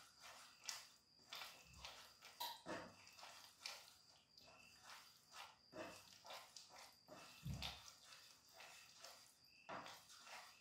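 Faint, irregular scrapes and taps of a spoon stirring food in a frying pan, with a couple of soft low thumps.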